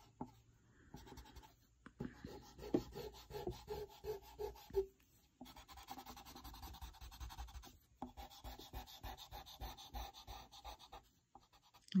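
Pencil-top rubber eraser rubbing back and forth on drawing paper, erasing pencil guidelines: quiet, quick scrubbing strokes in runs with a few short pauses.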